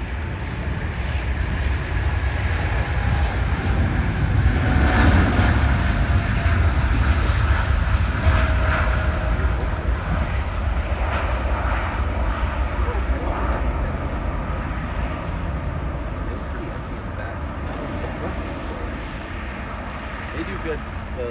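United Airlines Boeing 787-9 jet engines at takeoff thrust during the takeoff roll and lift-off: a deep rumble with a faint falling whine. It is loudest about five seconds in and fades steadily as the jet climbs away.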